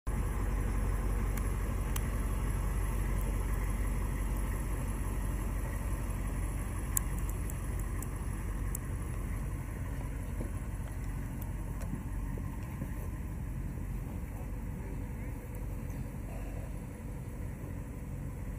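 Steady low rumble of an idling vehicle engine, easing slightly toward the end, with a few light clicks and knocks.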